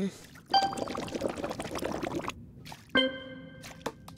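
A drink gurgling and slurping through a drinking straw for about two seconds, a cartoon sound effect. Near the end comes a short pitched vocal 'hm' and a couple of light clicks.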